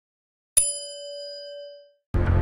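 A single bell-like ding sound effect for a notification-bell icon: one sharp strike about half a second in, then a clear ringing tone that fades away over about a second.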